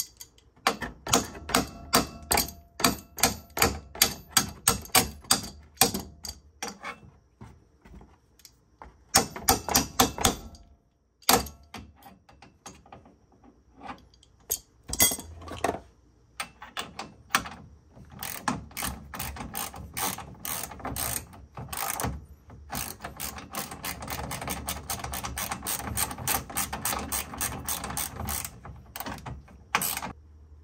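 Socket ratchet wrench clicking as a bolt is run in on the toe-arm mount of a HICAS delete bar on an R32 Skyline's rear subframe. Even clicks about three a second for the first several seconds, a short quick burst around the middle, then a long faster run of clicking in the second half.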